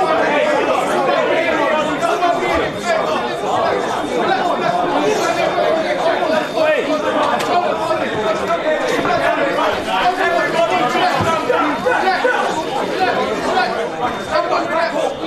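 Many voices talking over one another at once, a continuous babble of crowd chatter with no single voice standing out.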